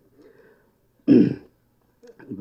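A man clears his throat once into a close microphone about a second in, a short rough burst between pauses in his speech.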